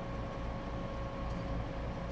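Ashford Elizabeth 2 spinning wheel being treadled while yarn is spun: a steady low whirr with a faint pulsing rumble and a faint steady hum.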